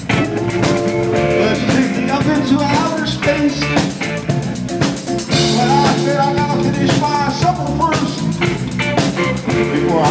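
Live rock band playing: a drum kit keeping the beat under electric guitars and bass.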